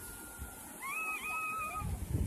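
Shallow surf washing over sand, with one high, drawn-out call lasting about a second near the middle.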